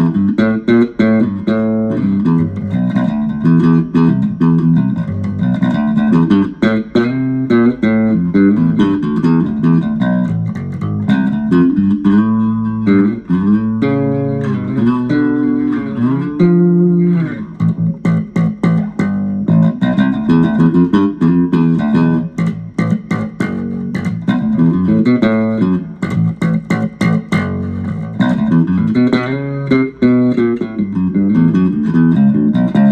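Squier Vintage Modified Jaguar Bass Special SS short-scale electric bass played fingerstyle: a continuous run of plucked bass notes, with a few notes sliding in pitch about halfway through.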